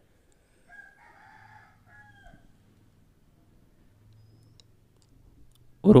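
A faint, distant animal call about a second in, lasting under two seconds with a short break, over a low background hum.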